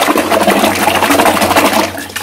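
Loud, rapid splashing and churning of water in a toilet bowl as a hand thrashes a small toy ball through it; it stops abruptly at the end.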